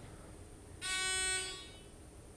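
Game-show buzzer: a single steady electronic tone of just over half a second, sounding as a contestant rings in to answer.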